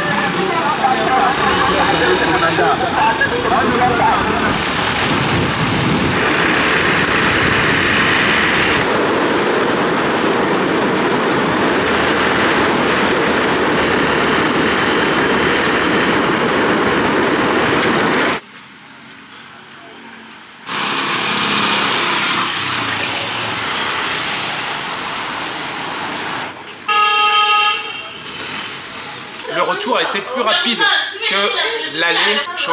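Riding pillion on a motorcycle taxi: a steady rush of wind and engine noise, which drops away for about two seconds past the middle. Near the end a vehicle horn sounds once, for about a second.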